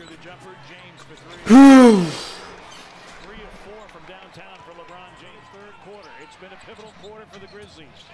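A man's loud, drawn-out vocal exclamation about a second and a half in, falling in pitch and lasting under a second. Around it runs the faint audio of a basketball game broadcast: commentary and arena sound with the ball bouncing on the court.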